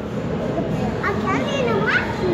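Background chatter of children's voices, with short high-pitched voiced exclamations about a second in and again near the end.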